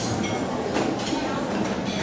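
Steady rumbling background noise with faint voices under it.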